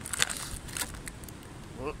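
Wind buffeting the microphone, with a few brief crinkles of a plastic biscuit packet being handled, the clearest about a quarter of a second and just under a second in.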